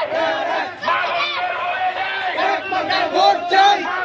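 A crowd of men chanting election campaign slogans together, many loud voices overlapping continuously.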